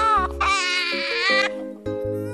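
A baby crying in long wails over background film music with held low notes.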